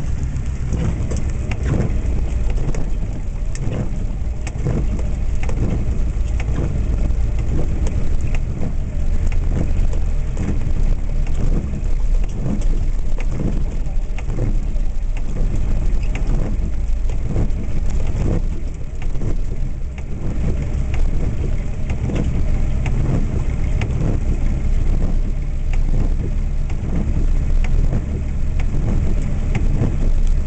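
A vehicle driving slowly over a muddy, flood-washed road, heard from inside the cab: a steady low engine and road rumble with many irregular small knocks and patters.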